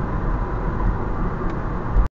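Steady engine and road noise heard inside a car's cabin as it cruises at about 30 mph in third gear, with a faint click about one and a half seconds in.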